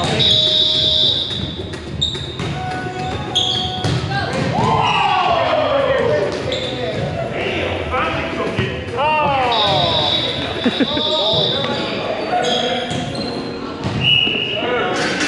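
A volleyball rally on a hardwood gym floor: repeated sharp hits of the ball off hands and arms and the ball bouncing on the floor, with short high squeaks of sneakers. Everything echoes in the large hall.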